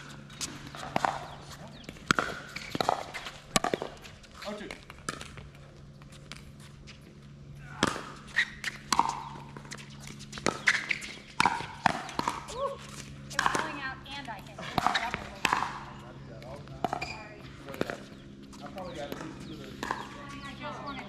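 Pickleball paddles hitting a hard plastic pickleball during a doubles rally: sharp pops come at an irregular pace, closest together and loudest in the second half, with the ball bouncing on the hard court between hits. A steady low hum runs underneath.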